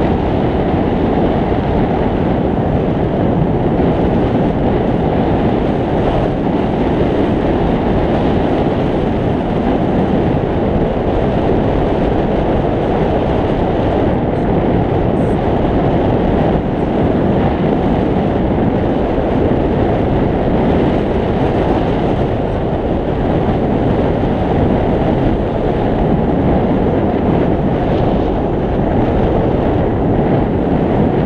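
Loud, steady rush of airflow buffeting the microphone of a camera mounted on a hang glider in flight. It is a dense, low-heavy wind noise with no breaks.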